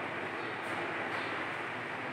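Steady, even background noise, with faint strokes of a marker being drawn along a whiteboard.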